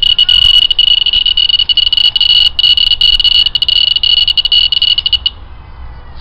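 Alpha particle detector's speaker sounding a loud, steady high-pitched buzz broken by rapid clicks, cutting off sharply a little after five seconds in. It is registering alpha particles from polonium-214 on the lid getting through the aluminium foil over the sensor.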